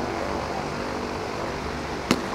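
A steady, low mechanical drone under the general noise of the ballpark, with no distinct knocks or pops.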